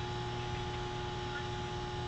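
Steady electrical hum with a faint background hiss, holding two thin steady tones; no other event stands out.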